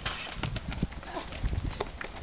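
Track hurdles clacking as runners clip them, a series of irregular sharp knocks, over a low wind rumble and faint voices.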